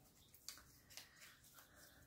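Near silence, with a few faint ticks of paper handling as the release backing is peeled back from double-sided adhesive on a vellum tag.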